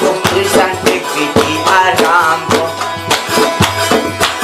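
Chitrali folk music: a long-necked Chitrali sitar plucked over a steady beat on a hand-held frame drum, with a man's voice singing a wavering line partway through.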